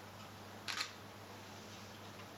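A camera shutter firing once, a short sharp double click about two-thirds of a second in, over a faint steady low hum.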